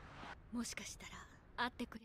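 Only quiet speech: soft, breathy Japanese dialogue from the anime episode.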